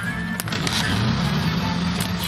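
Music with a motor scooter's engine running steadily underneath.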